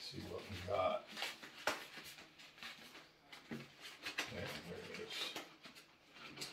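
A paper envelope being opened by hand: rustling and tearing paper with a few short, sharp crackles.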